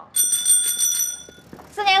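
Bicycle bell rung in a quick trill, a bright ringing that lasts about a second and a half and then fades.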